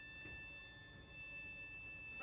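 String quartet playing very softly, holding thin, high tones steadily.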